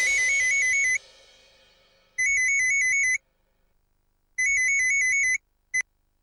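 Mobile phone ringing with an electronic trilling ringtone: three bursts of a fast warbling high tone, about a second each and about two seconds apart. A short fourth chirp near the end breaks off as the call is answered.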